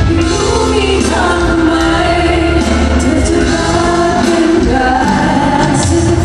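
Female pop singers performing live through a concert PA with musical accompaniment, sung in sustained phrases. The sound carries the reverberation of a large hall.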